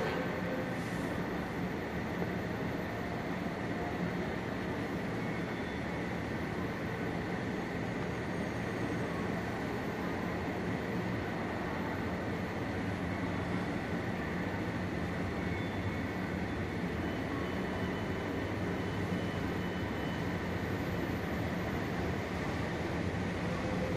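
Steady rumble and hum of a railway station platform, an even noise with a low drone that does not change.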